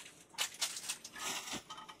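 Small clear plastic case and its packaging being handled by hand: a run of light plastic clicks and taps with some crinkling, as the taped-shut blade case is worked at.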